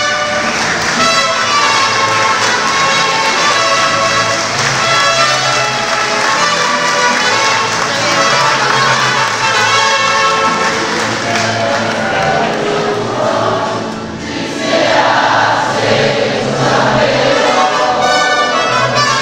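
Mariachi band playing, with several voices singing together over the instruments. The music runs on without a break, dipping briefly in level about three-quarters of the way through.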